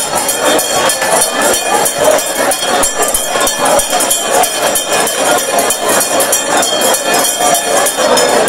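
Loud live church praise music, dense with fast drumming and hand percussion, with congregation voices mixed in.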